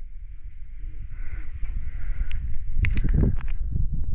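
Wind buffeting the microphone, a steady low rumble, with a few knocks in the second half from footsteps on the fire tower's wooden boards.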